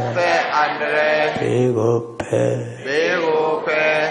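An elderly Buddhist monk chanting into a handheld microphone: one man's voice in a slow, melodic recitation, holding long tones that rise and fall, with a brief pause near the middle.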